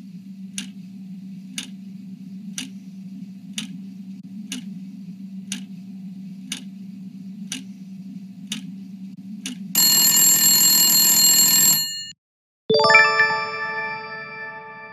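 Game-show countdown timer sound effect: a clock ticks about once a second over a low steady drone for some ten seconds. Then a loud buzzer sounds for about two seconds as time runs out, and after a short gap a ringing chime fades out as the correct answer is revealed.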